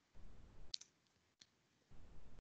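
A few faint, sharp computer keyboard keystrokes.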